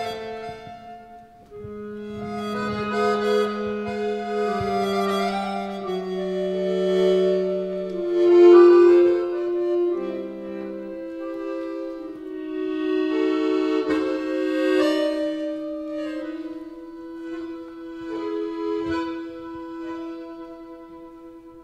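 Accordion playing a slow introduction in free time, with long held notes and chords that change every second or two.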